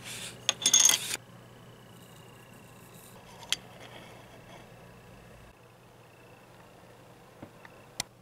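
A crinkly plastic sleeve of petri dishes being handled, with clinking, for about the first second. Then a faint steady hum, broken by a single sharp click about three and a half seconds in.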